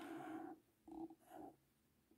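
Felt-tip pen scratching across a paper pad as Chinese character strokes are written: one longer stroke at the start, then two short strokes about a second in.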